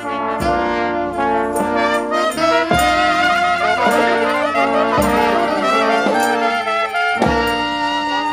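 New Orleans brass band playing a slow, sad dirge: trumpets, trombones, saxophone, clarinet and sousaphone holding long notes together, with a low thump about every two seconds.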